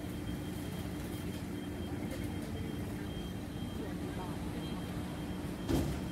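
Urban street ambience: a steady low hum with constant tones, like idling traffic or building ventilation, with faint voices of passers-by. A single short thump sounds near the end.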